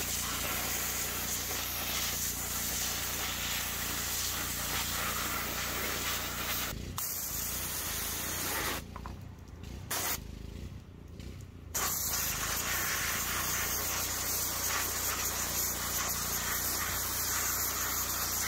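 Pressure washer spraying a high-pressure jet of water onto plastic car interior trim and a mat to wash off spilled paint, a steady hiss of spray with a steady hum underneath. The spray breaks off briefly about seven seconds in and again for a few seconds around the middle.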